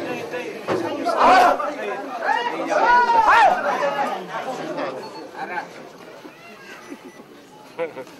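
A crowd of voices chattering, with loud calls that rise and fall in pitch during the first few seconds, then settling to a quieter murmur.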